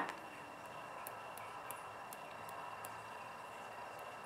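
A run of faint, light ticks, about two to three a second, from a paint-loaded nail-art liner brush being tapped at its neck to splatter paint.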